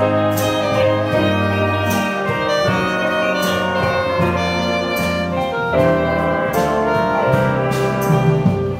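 A live jazz band of saxophones and trumpets playing slow, sustained chords over a bass line.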